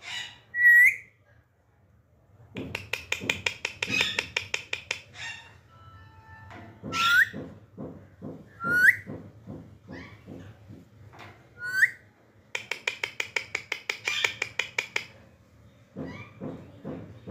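Young Alexandrine parakeets begging while being syringe-fed: three bursts of rapid, rhythmic calls at about eight a second, with a few short rising squeaks between them.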